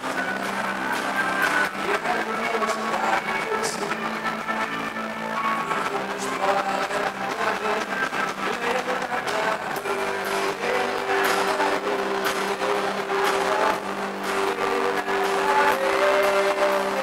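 Live band playing, with an acoustic guitar strummed over steady held low notes.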